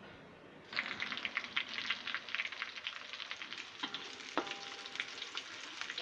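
Chopped garlic sizzling and crackling in hot oil in a metal wok, the crackle starting about a second in, while it is stirred with a wooden spatula; a brief knock near the middle.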